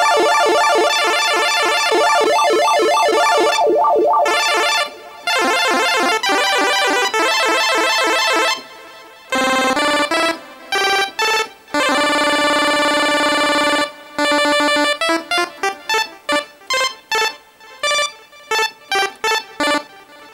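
Nord Stage 3 Compact's synth section (Nord Lead A1 engine) playing a chiptune-style pulse-wave lead: long held notes whose tone shifts in the first few seconds, then a run of short staccato notes near the end.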